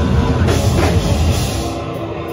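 Hardcore band playing live and loud, with pounding drums and cymbals under distorted guitars and bass. Near the end the cymbals drop away, leaving the guitars ringing on.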